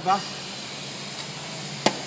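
A single sharp metallic click a little before the end, over a steady workshop hum: the steel parallel bar, just lifted out of the milling-machine vise, being set down against metal.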